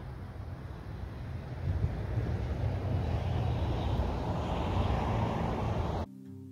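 Wind buffeting the microphone outdoors, a low rumble that swells into a stronger gust about two seconds in and holds there until it cuts off suddenly.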